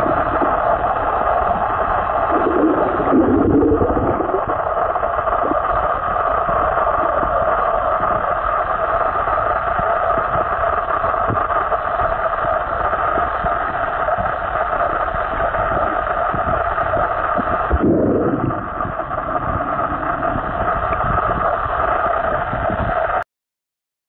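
Steady, loud, muffled noise of a camera recording underwater, with a brief lower swish a few seconds in and a short dip near the end.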